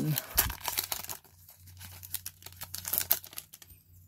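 Foil Pokémon TCG booster pack wrapper crinkling and tearing in the hands as the pack is opened. The crackling is loudest in the first second, then thins to quieter, scattered rustles.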